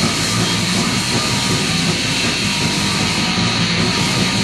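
Punk rock music in a loud, distorted instrumental passage without vocals: a dense, noisy wall of sound.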